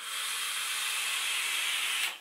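Steady hiss of a long draw through a rebuildable dripping tank atomizer on a HotCig G217 box mod firing at 70 watts: air rushing past the heated coil. It holds even for about two seconds and then cuts off.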